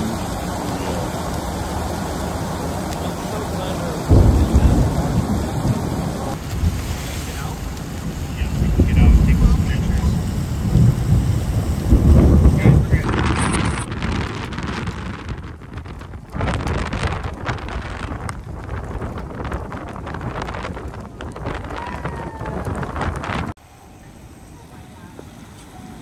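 Thunderstorm noise: rain and wind with heavy, deep rumbles that surge up several times in the first half. The sound changes abruptly at several points, and the later part is thinner with scattered knocks and gusts.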